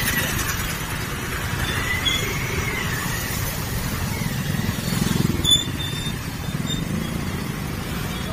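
Motor scooter riding through shallow floodwater: a steady rumble of engine, wind and splashing water, with a faint wavering squeal about two seconds in.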